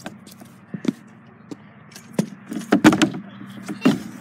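A stunt scooter's wheels and deck knocking and clattering on plywood ramps during a trick attempt, with scattered knocks and the loudest cluster of impacts about three seconds in.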